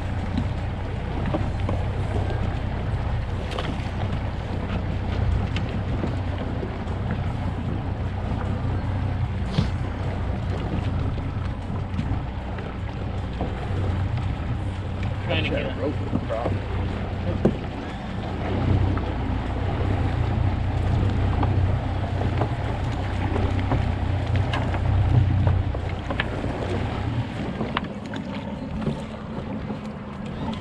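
Boat's outboard motor running with a steady low hum, easing off near the end, with wind noise on the microphone.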